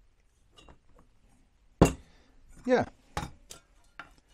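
A single sharp metal clank a little before halfway, with a brief ring, as the stainless steel pot and steel stove ring knock together, followed by a couple of lighter metal clicks near the end.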